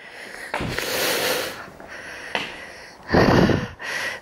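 A person's breathing close to the microphone: a long breath starting about half a second in, a weaker one around two and a half seconds, and another strong one just after three seconds.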